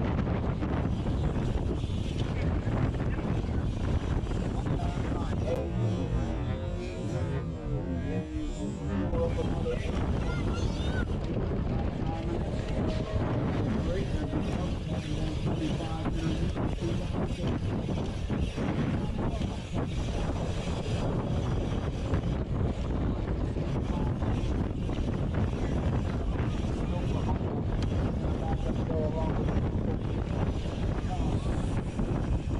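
Wind buffeting a handlebar-mounted action camera's microphone as a BMX bike is ridden fast down a race track, with the tyres rumbling over the packed dirt and pavement.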